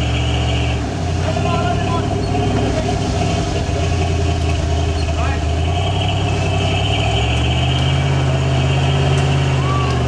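The engine of a lifted early Ford Bronco runs steadily while a winch hauls the truck up a steep dirt slope. A high, steady whine from the winching stops about a second in and comes back at about six seconds.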